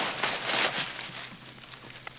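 Paper sheet on an examination table crinkling and rustling loudly as a man rolls over on it, dying away after about a second.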